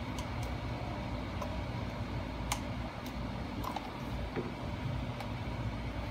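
Scattered short clicks and handling noise from an ear pad being lined up and pressed onto a plastic headset ear cup, the sharpest click about two and a half seconds in, over a steady low background hum.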